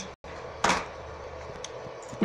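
A short, loud knock or handling noise about two-thirds of a second in, then a few faint clicks over a steady low hum.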